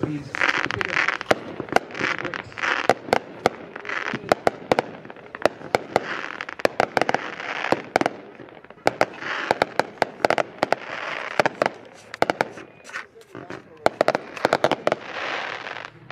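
A Red Apple Fireworks 'Supernatural' 64-shot consumer firework cake firing. Waves of hissing crackle come every few seconds, with many sharp cracks and pops through them.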